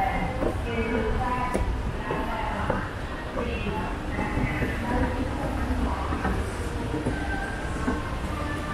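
Escalator running, a steady low mechanical rumble, under indistinct voices.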